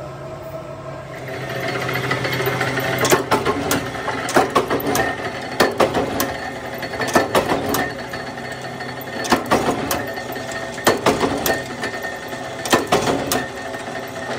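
Mechanical power press running, its die punching small bush blanks out of old tyre rubber: a steady machine clatter with sharp knocks every second or so from about three seconds in.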